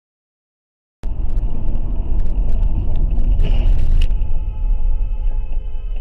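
Heavy low rumble of a car driving, recorded by an in-car camera, starting suddenly about a second in with scattered knocks. A short rushing burst ends in a sharp knock about four seconds in, after which several steady high tones sound over the rumble.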